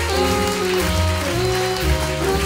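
Jazz big band playing: held reed and brass chords that change every fraction of a second over a low bass line.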